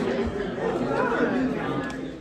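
Several people chatting over one another, with laughter at the start.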